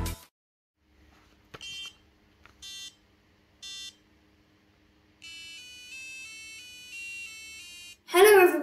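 BBC micro:bit's speaker beeping three times about a second apart, then playing a short tune of stepped electronic notes for the last few seconds.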